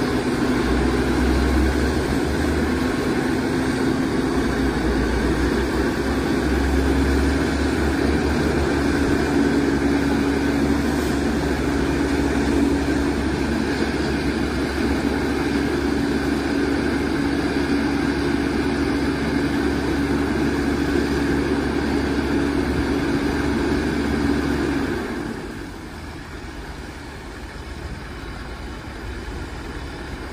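Fire pumper's Caterpillar C12 diesel engine running steadily at raised revs to drive the pump feeding the deck gun, a heavy hum with a held tone that creeps slightly higher. About 25 seconds in, the sound drops noticeably and stays quieter.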